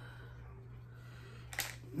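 Quiet room tone with a steady low hum. About one and a half seconds in comes a short, noisy rustle with clicks.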